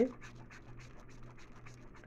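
Faint, quick scratching of a bar of soap being rubbed across a metal hand grater, several light strokes a second.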